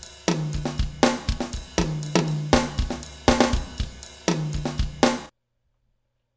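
Sampled acoustic drum kit from KitCore Deluxe drum software playing a funk loop: snare, cymbals and deep pitched low-drum hits in a steady groove. It stops abruptly about five seconds in.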